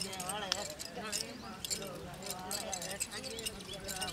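Voices of a group over frequent short light clicks and jingles, the sound of dancers' steps and metal ornaments as they move together.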